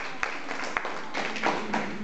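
People clapping along in a quick, steady beat that breaks up after about a second into looser applause, with voices over it in the second half.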